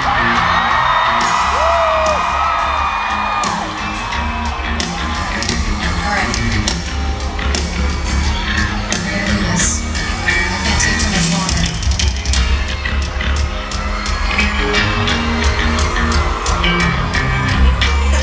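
Live rock band playing an instrumental passage, with bass and drums carrying a steady beat and no lead vocal, heard loud from the audience. A crowd screams and cheers over it, with the loudest shrieks in the first few seconds.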